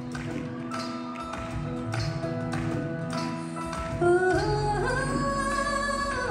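Live band playing an amplified song intro, with held keyboard-like tones and sharp percussion hits. A woman's voice comes in singing the melody about four seconds in.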